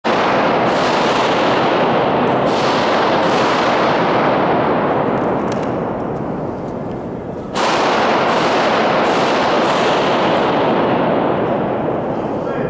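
Pistol shots, .45 ACP: several in the first few seconds and a last one about seven and a half seconds in. Each shot is followed by a long, heavy echo from the rock walls of the mine gallery, so the sound hardly dies away between shots.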